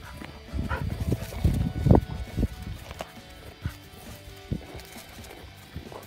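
Footsteps crunching on packed snow: a quick run of steps in the first couple of seconds, then sparser steps, with background music underneath.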